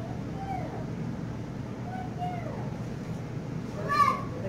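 A cloth wiping window glass, giving short squeaks that rise and fall in pitch over a steady low rumble. The loudest squeak comes right at the end.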